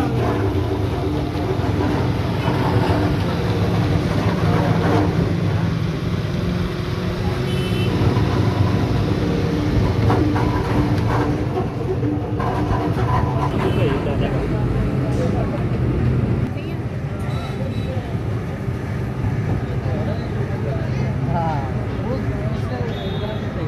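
Electric countertop blender motor running as it mixes cold coffee: a steady hum that drops in level about 16 seconds in. Voices chatter in the background.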